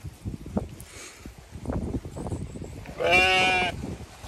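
A Zwartbles ewe bleats once, a single wavering call under a second long, about three seconds in, after a stretch of soft shuffling and rustling.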